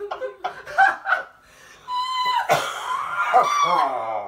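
Several people laughing: short bursts of laughter at first, then after a brief lull a long, loud high-pitched laugh through the second half.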